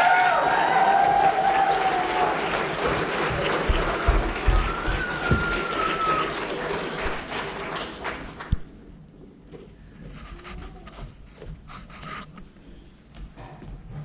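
A song ends on a held final note, and an audience applauds and cheers for about eight seconds, with one cheer rising above the clapping partway through. The applause then dies away to scattered faint sounds.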